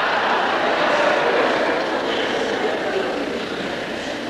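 Audience laughing, the laughter slowly dying down.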